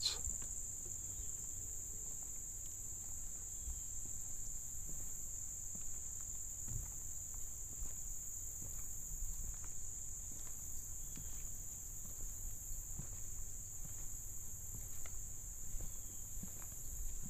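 Steady high-pitched chorus of field insects such as crickets, with faint scattered footsteps on a wooden plank bridge deck.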